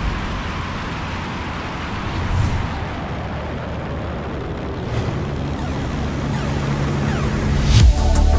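Steady roar of wind and propeller engine noise from a camera mounted on the wing of a DHC Chipmunk in flight, slowly growing louder toward the end.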